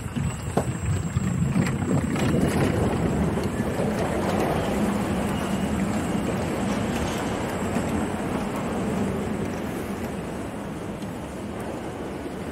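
Electric unicycles rolling over wooden decking: a steady rumble of wheels on the planks mixed with wind on the microphone. It builds over the first couple of seconds and eases a little near the end.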